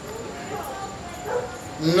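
A man's voice through a microphone: mostly a pause with a few faint short pitched glides, then his speech starting loudly near the end.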